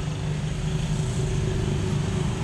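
A steady low rumbling drone with a faint steady hum over it, unchanging throughout.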